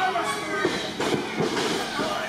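Murmur and chatter of a small crowd in a hall over a steady low hum, with a few soft thuds from feet on the wrestling-ring mat about a second in.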